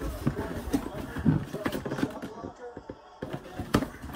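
Cardboard shoebox being handled and lowered for opening: scattered knocks, taps and scrapes of the box and its lid, with one sharper knock near the end.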